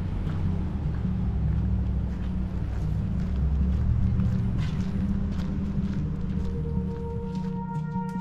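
Background music: a deep, steady low drone with scattered short hits above it, and sustained higher tones coming in near the end.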